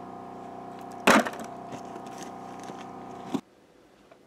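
A single sharp knock about a second in, over a steady hum that cuts off abruptly near the end.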